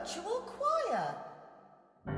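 Voices give a swooping, sigh-like exclamation that falls steeply in pitch about a second in, closing the sung line. The sound then fades away to near silence.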